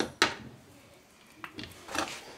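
Sharp handling knocks and clicks of metal driveshaft CV-joint parts on a workbench while the joint is being greased: two knocks at the start, then a few more near the end.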